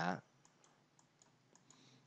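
A few faint computer mouse clicks scattered through a quiet stretch, as highlighter strokes are drawn on a web page.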